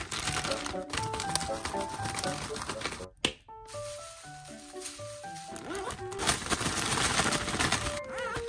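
Takis rolled tortilla chips shaken with sour salt in a plastic zip-top bag, the bag crinkling and the chips rattling, loudest near the end, with a short break about three seconds in. Background music plays throughout.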